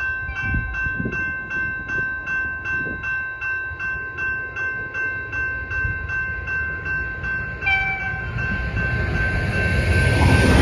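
Level-crossing bell ringing steadily, about two strokes a second. The rumble of an approaching V/Line train builds near the end, and a short tone sounds about three-quarters of the way through.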